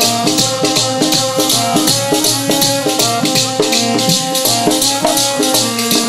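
Instrumental passage of Sikh kirtan music without singing: a harmonium holding the melody over a fast, even beat of jingling hand percussion.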